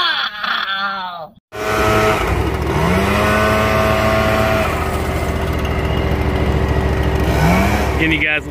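A man's drawn-out yell, cut off suddenly about a second and a half in. Then an Echo 770 backpack leaf blower's two-stroke engine runs at high throttle, its pitch rising twice as the throttle is opened.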